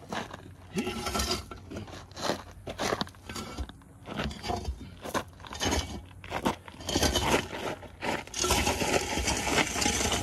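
Gravel crunching and scraping as the removed hydraulic pump and bracket are dragged across it and a person crawls out over it. The crunches come irregularly and are busiest in the last few seconds.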